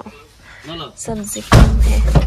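Car door thump about one and a half seconds in, loud and sudden, followed by a low rumble. Faint voices come before it.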